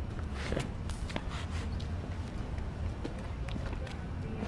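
Footsteps on pavement: a few irregular short steps over a steady low rumble of street ambience.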